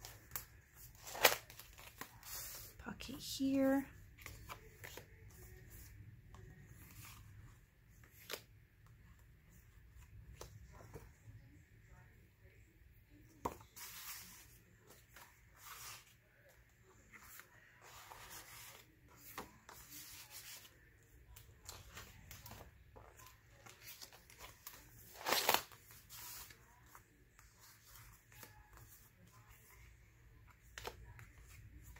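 Paper handling in a handmade spiral-bound paper journal: pages, envelopes and picture cards being lifted, flipped and slid, in light rustles and clicks. The loudest are sharp page-flip snaps about a second in and again near the end.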